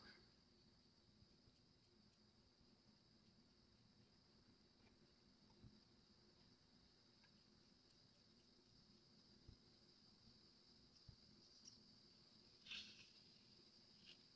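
Near silence: faint room tone with a steady high hiss, broken by a few faint ticks of a craft stick against a small plastic mixing cup as it stirs a thick casting mix.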